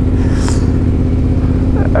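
Yamaha Ténéré 700's parallel-twin engine running steadily at low revs in second gear, a low even hum.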